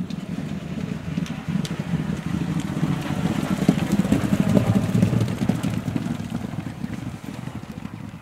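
Hooves of four thoroughbred racehorses galloping on turf, a rapid drumming that grows louder as they pass close by about four to five seconds in, then fades as they gallop away.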